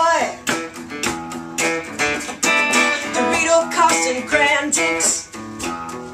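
An archtop guitar strummed, with a woman singing over it in short phrases.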